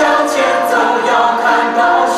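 Church choir of women singing a hymn together, led by a woman singing into a hand microphone.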